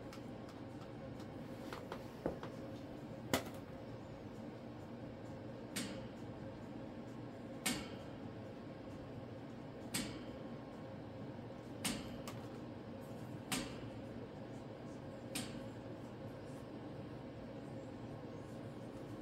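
Sharp knocks from a cockatoo's plastic toy against its wooden perch, about eight of them roughly two seconds apart, the loudest about three seconds in, over a steady low room hum.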